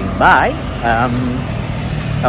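A man's voice in two short bursts over a steady low hum from nearby road traffic.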